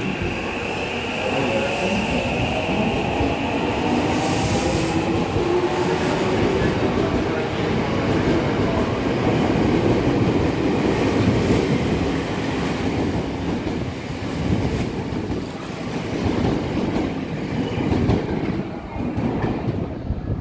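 An 8000-series electric train departing a station. Its motors whine upward in pitch as it accelerates, over building wheel-and-rail noise and the clatter of the cars running past.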